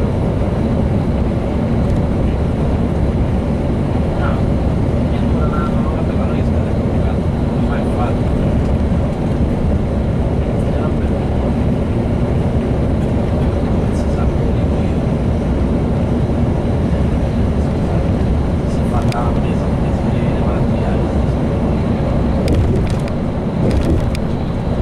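Steady engine and road noise inside a moving coach bus, a low, even rumble with no change in pace.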